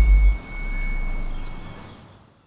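The dying tail of an added teleport sound effect: a deep boom that drops away, then a low rumble fading out over about two seconds, with a thin high ringing tone over it.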